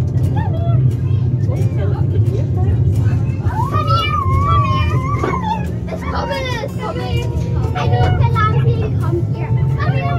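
A farm park's miniature ride-on train running with a steady low rumble, with children's voices calling out over it.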